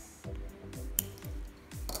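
Background music with a steady beat; about a second in, one sharp snip of jewelry side cutters cutting through Tiger Tail nylon-coated beading wire.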